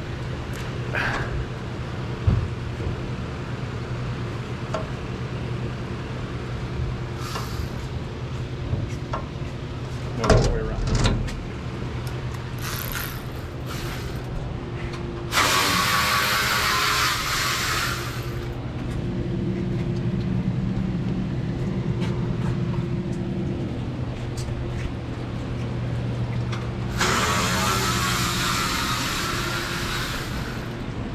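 Putzmeister TK70 concrete pump's engine running steadily, with a few knocks in the first half. Two loud bursts of hissing, each lasting two to three seconds, come around the middle and near the end.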